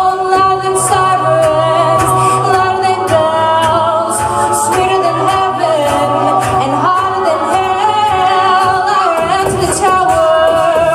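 A mixed a cappella group singing layered, sustained vocal harmonies with vocal percussion, and no instruments. A low held bass note underpins the chords and drops out about seven seconds in.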